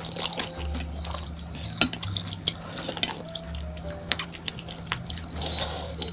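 Close-up eating sounds of a person chewing spicy stir-fried noodles, wet mouth clicks and smacks, with wooden chopsticks tapping and scraping in a ceramic bowl. Soft background music runs underneath.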